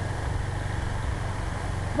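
Wind buffeting the camera's microphone: a steady low rumble.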